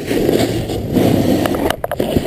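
Snowboard base sliding and scraping over packed snow, with wind rushing over the camera's microphone. There are a few small clicks, and the noise drops briefly near the end.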